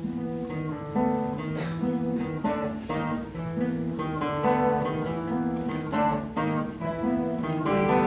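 A large ensemble of nylon-string classical guitars starts playing at once, with a repeating plucked figure over held low notes and several sharp accented chords.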